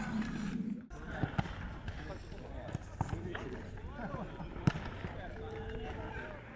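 Ambient sound of an amateur football match on a dirt pitch: players' distant shouts and calls over a steady low hum. A few sharp thuds of the ball being kicked land a second or two apart.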